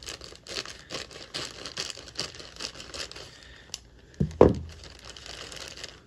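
Clear plastic bag around a model-kit sprue crinkling and rustling in a crackly run as it is cut open with scissors and pulled apart by hand. A short, louder low sound cuts in about four seconds in.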